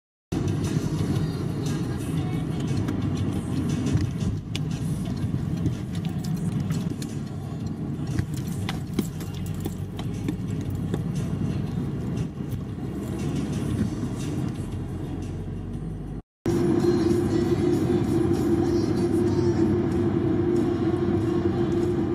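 Steady low rumble of a car driving, heard from inside the cabin, with music playing. The sound drops out for a moment about 16 seconds in and comes back with a steady hum added.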